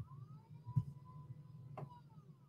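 Faint pitched tone that slowly rises and falls back down, over a low steady hum. Two small clicks come near the middle and near the end.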